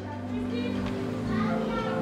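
Soft background music holding a steady chord, with faint voices in the background.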